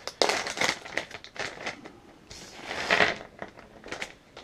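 A printed pouch of chewable survival food tablets being torn open, its wrapper crinkling and crackling in quick bursts for the first couple of seconds. A second, fuller rustle comes a little past halfway as the pouch is tipped and the tablets spill out onto the table.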